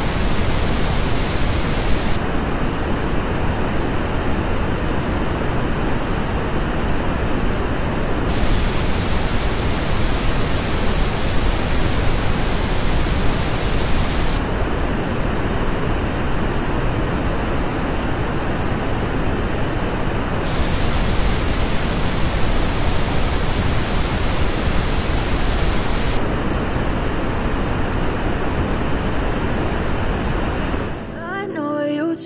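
Pink noise test signal switching about every six seconds between the flat original and the same noise shaped by the Focal Elegia headphones' measured frequency response. In the Elegia stretches the noise loses energy in several narrow bands in the treble.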